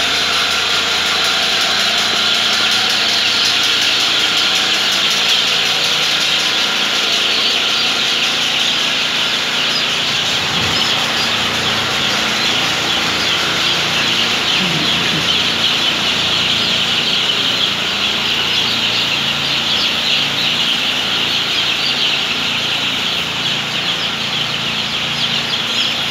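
Hundreds of six-day-old broiler chicks peeping all at once in a dense, continuous chorus, over a steady low mechanical hum.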